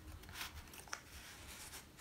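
Faint rustling of paper and plastic planner inserts being handled, with one light click about a second in.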